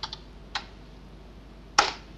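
A few key presses on a computer keyboard: two quick taps at the start, another about half a second in, and a louder, sharper key strike near the end.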